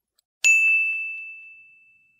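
A single bright ding from a notification-bell sound effect, struck about half a second in and ringing away over about a second and a half.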